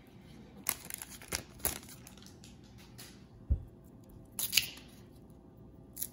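Foil wrapper of an Upper Deck hockey card pack being torn open and crinkled by hand: a handful of sharp crackles, the clearest about two thirds of a second in and again around four and a half seconds, with a dull thump in between.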